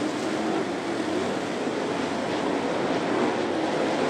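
A pack of dirt late model race cars running at speed around a clay oval, their V8 engines blending into one steady drone.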